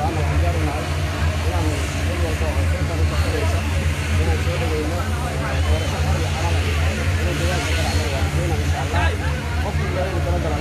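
A man speaking continuously into a handheld microphone, over a steady low rumble.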